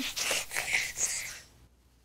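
A cartoon character blowing his nose into a tissue: a few short, noisy blows, over by about a second and a half in.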